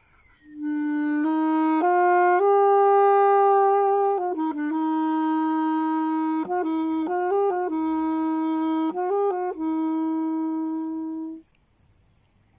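Solo saxophone playing a slow melody of long held notes. It comes in about half a second in and ends on a long held note that cuts off about a second before the end.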